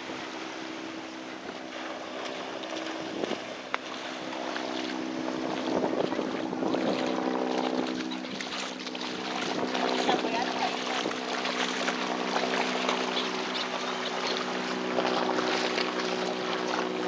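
Dogs splashing as they run and wade through shallow sea water, with wind buffeting the microphone and a steady low drone underneath; the splashing grows louder from about six seconds in.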